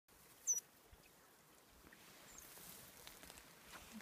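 A young Eurasian otter squeaking: one sharp, high-pitched squeak about half a second in, then a much fainter chirp a couple of seconds later, over a quiet background.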